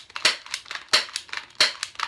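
Sharp plastic clacks of an airsoft pistol being handled, its slide being worked by hand, about five clicks in quick succession with the loudest about a second in and at about 1.6 s.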